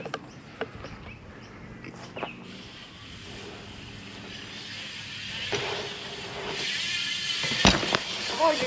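BMX bike tyres rolling on concrete, getting steadily louder as the riders come closer, with a sharp knock near the end.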